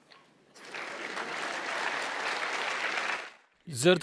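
Audience applauding, starting about half a second in and stopping abruptly near the end.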